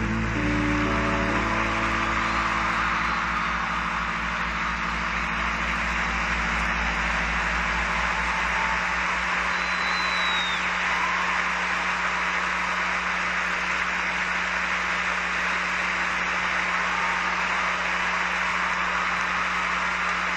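Arena audience applauding steadily, as the last notes of the skating music die away in the first second, with a steady low hum underneath and a brief high whistle about ten seconds in.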